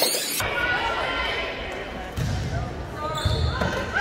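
Indistinct voices of people talking and calling out, with a ball bouncing on a hard floor several times in the second half.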